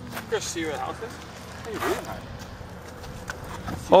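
People talking indistinctly at a distance in short snatches, over a steady low hum.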